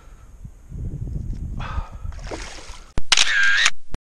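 Low rumbling and splashing as a hooked grouper is brought to the surface, then about three seconds in a sharp click and a loud camera-shutter sound effect lasting under a second.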